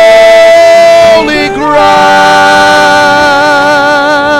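A man singing a gospel chorus, holding one long note, then moving to a second, slightly lower held note a little over a second in that wavers with vibrato toward the end.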